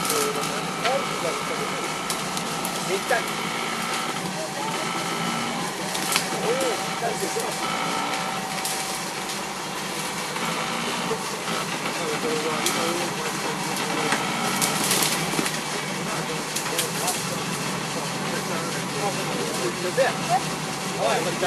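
Jeep CJ5's V8 engine running steadily at low speed as the Jeep crawls up a rock step, with faint voices over it.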